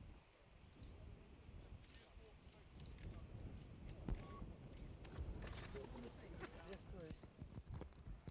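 Scattered sharp clicks and knocks, growing busier from about five seconds in, with faint voices in the background.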